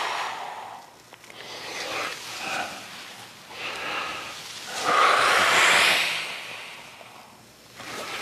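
A man breathing slowly and heavily while holding a leg stretch, long breaths every couple of seconds, the loudest about five seconds in.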